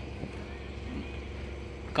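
A vehicle engine running steadily, heard as a low, even hum with no change in pitch.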